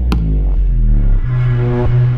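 Electronic suspense score: a sharp hit just after the start over a low drone, then a steady pulsing synthesizer tone from about a second in.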